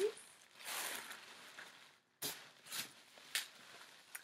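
Clear plastic shopping bag crinkling and rustling in several short bursts as it is opened and a handbag is pulled out of it.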